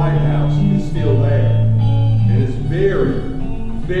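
Live band music: long held bass guitar notes stepping between pitches about once a second, with guitar played over them.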